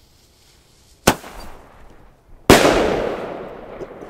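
Weco firework going off: a sharp crack about a second in, then a much louder bang about a second and a half later that dies away in a long echo.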